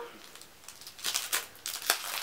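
Several short crinkles and light taps of product packaging being handled.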